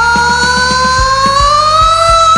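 A man belting one long sustained high note in a rock song, its pitch sliding slowly upward, over a loud karaoke backing track with a steady kick drum beat.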